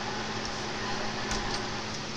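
Steady static hiss from a CB radio receiver between transmissions, with a low steady hum underneath. A faint knock comes a little past halfway.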